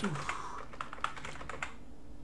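Typing on a computer keyboard: a quick run of about half a dozen keystrokes.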